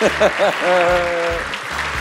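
Studio audience applauding, with background music and a brief held voice under the clapping.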